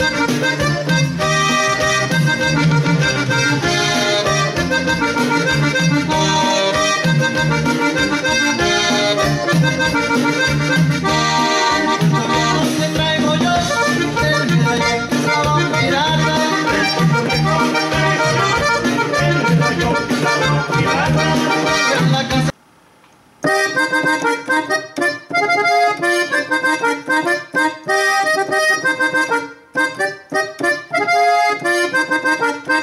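Korg OASYS keyboard playing a sampled Gabbanelli M101 accordion in swing tuning: a lively accordion melody over a low bass part. About three-quarters of the way through it breaks off for a second, then comes back in shorter, choppier phrases.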